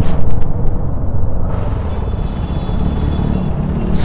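KTM Duke 390 single-cylinder engine running in slow traffic, heard as a steady low rumble with wind buffeting the helmet-mounted microphone. From about a second and a half in, a steady hiss with faint high tones joins it.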